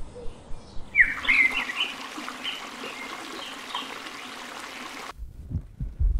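Birds chirping in short quick calls over a steady hiss of outdoor background noise. The sound cuts off abruptly about five seconds in.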